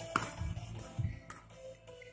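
Background music with sharp percussive hits about once a second, getting quieter toward the end.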